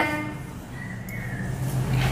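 Low steady hum of a motor vehicle that grows louder through the second half, with a faint, short horn-like tone about a second in.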